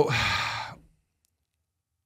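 A man's breathy sigh into a close microphone, fading out within about a second as it trails off from a drawn-out 'So'.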